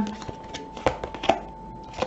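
Tarot cards being handled as one is drawn from the deck: light card snaps and taps, the two sharpest about a second in and a moment later.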